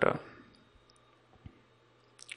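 A single faint click of a computer mouse button about one and a half seconds in, as text is selected in a code editor, with near silence around it.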